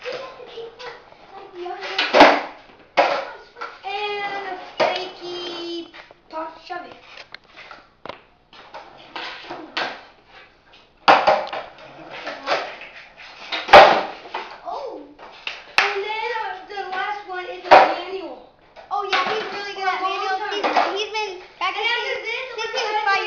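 Children's voices talking and calling out, broken by several sharp clacks of a skateboard hitting a concrete floor as a boy tries flip tricks. The loudest clacks come about two seconds in and near the middle.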